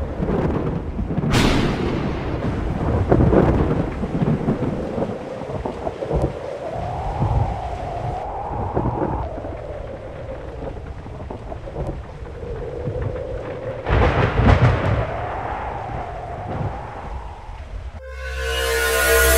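Thunderstorm sound effect: thunder cracks about a second in and again near the end, with rumbling over a steady hiss of rain and a slowly wavering tone.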